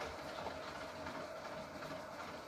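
Quiet, steady background noise with a faint low rumble and a thin steady hum; no distinct events.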